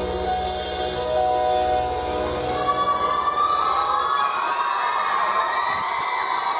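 Live acoustic ballad accompaniment holding a sustained chord, with the concert audience starting to cheer over the music about halfway through.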